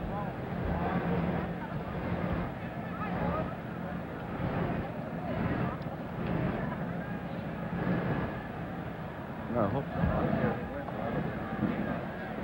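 Stadium crowd noise: a large crowd murmuring and shouting, with scattered louder voices rising out of it about ten seconds in. Heard through old, narrow-band television audio.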